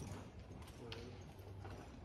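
Hoofbeats of a Quarter Horse gelding ridden at a slow gait over soft dirt arena footing, a few scattered strikes over a steady low hum.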